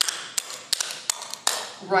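Clogging taps striking a hardwood floor in a quick, uneven run of sharp clicks as a dancer does rock steps and a triple step.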